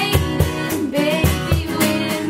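Strummed acoustic guitar and cajon keeping a steady beat, with girls' voices singing together.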